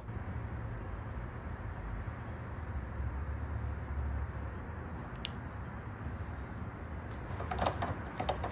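Motor oil pouring from a bottle through a plastic funnel into an engine's oil filler, a steady pour with no gurgling rhythm. One sharp click about five seconds in.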